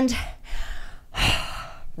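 A woman's breathy sigh, a long exhale about a second in, as she catches her breath at the end of an exercise set.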